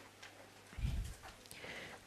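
Faint, soft knocks of a stylus writing on a tablet: a low bump just before the middle and a weaker one towards the end.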